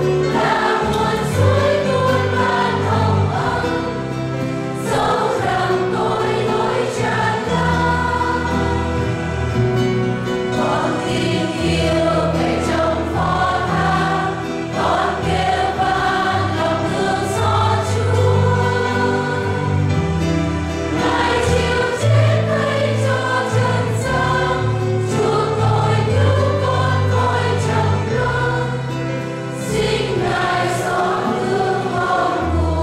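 Church choir, mostly women's voices, singing a hymn over sustained low instrumental accompaniment.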